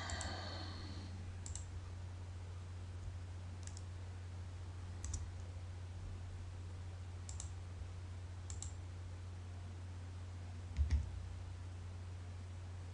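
Computer mouse clicks: a handful of single clicks spaced a second or more apart, then a louder double click near the end, over a steady low hum.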